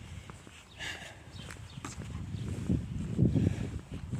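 Walking sounds picked up by a handheld tablet's microphone: footsteps with low, uneven rumble and handling noise, louder in the second half.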